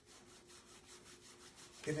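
Palms rubbing together quickly back and forth, a faint swishing with a rapid even stroke.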